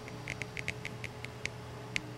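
Light irregular ticking and crackling, about ten quick ticks, from dry leader and tippet line as all four ends of a surgeon's loop are pulled and the knot cinches tight. A faint steady hum runs underneath.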